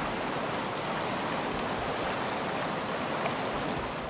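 A glacier-fed mountain creek rushing steadily, a constant even rush of fast-flowing water.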